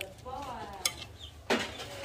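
Metal ladle stirring enoki mushrooms in water in a large aluminium wok, with a sharp clank of metal on metal about one and a half seconds in.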